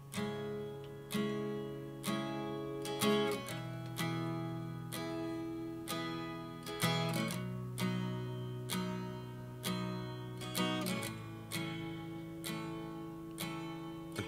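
Acoustic guitar playing a slow song intro: chords struck about once a second, each left to ring and fade before the next.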